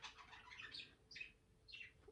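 A pet bird giving a few faint, short chirps, each falling in pitch.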